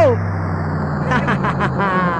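Bounce dance music from a DJ mix: a held bass note fading under a falling sweep at the start, then a voice coming in over the track about a second in.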